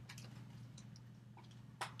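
A few faint computer mouse clicks, scattered and quiet, over a low steady hum, as a drop-down menu is opened in software.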